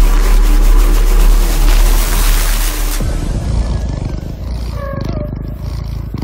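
Electronic intro sound design: a loud, noisy whooshing rumble over deep bass that drops away about three seconds in. It leaves a rougher, quieter texture with a few short gliding tones.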